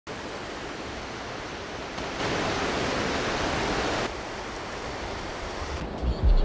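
Steady rushing noise of flowing river water. It steps up abruptly about two seconds in and drops back about four seconds in.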